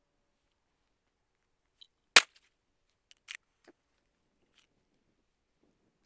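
One loud shot from a semi-automatic pistol about two seconds in, a single round fired, followed about a second later by a much fainter sharp click.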